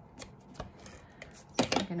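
A few light, separate clicks and taps of card stock being handled and pressed down on a paper-crafting mat.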